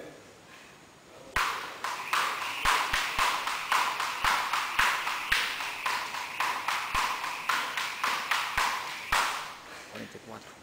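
Jump rope slapping a rubber gym mat in a steady rhythm, about three slaps a second. It starts about a second and a half in and stops near the end.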